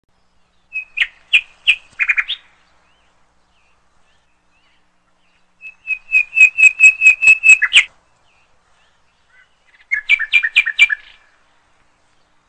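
A bird calling in three bursts of rapid, repeated high chirps, several notes a second. The middle burst is the longest and loudest.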